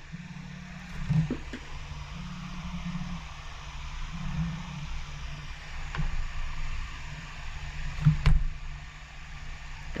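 Computer mouse clicking a few times, soft and short, about a second in, near the middle and near the end, over a steady low hum and hiss of background noise.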